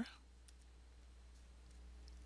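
Faint clicks of a stylus on a writing tablet while handwriting, over a low steady hum near silence.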